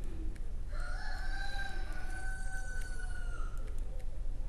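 One long pitched call, held at a steady pitch for about three seconds and dipping slightly at its end, over a low steady hum.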